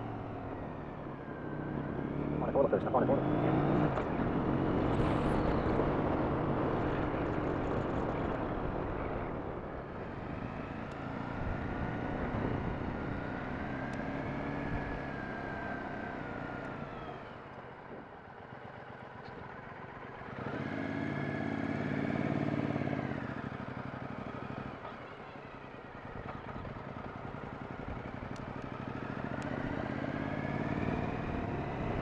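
2007 Triumph America's 865cc parallel-twin engine heard from the rider's helmet while riding through town, rising and falling in pitch as the bike speeds up and slows. Wind rush over the microphone is heaviest in the first several seconds.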